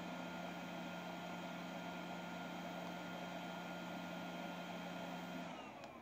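Xiaomi Mi Robot Vacuum Mop 2 Pro running with a steady low hum and faint whine. Near the end its motors wind down with a falling whine as the robot stops on a laser distance sensor fault.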